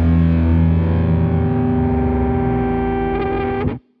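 Rock song ending on a held, distorted electric guitar chord that rings out steadily and cuts off abruptly just before the end.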